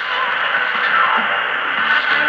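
Music from a shortwave broadcast on 7490 kHz, played through a JRC NRD-93 communications receiver's speaker. It sounds narrow and tinny, with nothing above the upper midrange, and a haze of static lies under it.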